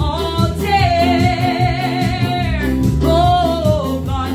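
A woman singing a gospel song with vibrato over her own electronic keyboard accompaniment and a steady bass line. She holds one long note for about a second and a half, then a second note near the end that falls in pitch.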